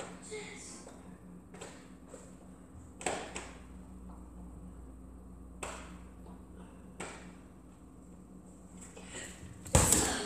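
A ball thudding against the floor and walls of a hallway: several separate knocks a second or two apart, with the loudest one near the end.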